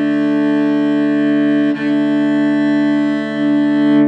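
Cello's open D and A strings bowed together as one sustained double stop, with one bow change a little under two seconds in. It is the D string being tuned to the A by ear, listening for the fifth to lock, and it is close enough to in tune.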